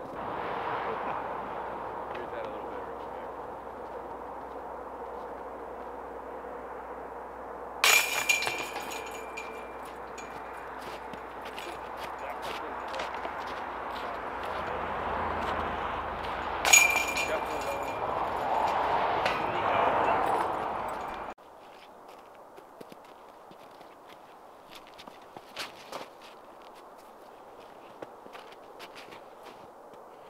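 Two putted discs hit the chains of a disc golf basket, about eight seconds apart. Each is a sharp metal clash with a short ring.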